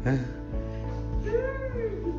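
Background music, with a short high-pitched vocal wail over it about a second and a half in; its pitch rises and then falls.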